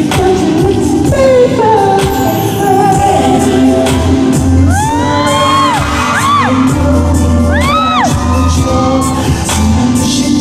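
A live pop/R&B song played loud over a concert hall's sound system, with sung vocals over a heavy bass beat. Between about five and eight seconds in, high tones swoop up and fall back over the music.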